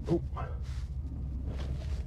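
The 1960 Chevrolet Bel Air's 6.2-litre LS3 V8 running at low revs, a steady low hum heard from inside the cabin.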